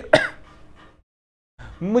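A man clears his throat once, a short vocal burst rising in pitch, followed by about half a second of dead silence where the audio is cut; his speech starts again near the end.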